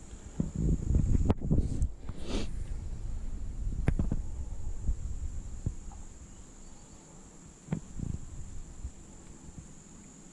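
A steady high-pitched insect trill, typical of crickets, with low rustling and bumping of handling noise in the first few seconds and a few faint clicks later.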